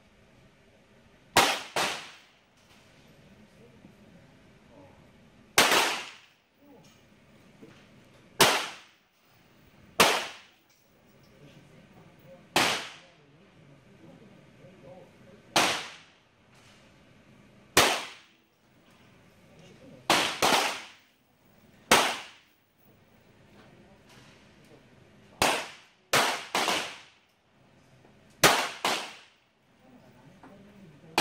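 .22LR semi-automatic target pistols firing single shots from several shooters along the firing line, about sixteen sharp cracks at an irregular, unhurried pace, each with a short echo, sometimes two or three within a second. The slow, scattered rhythm is that of a precision stage.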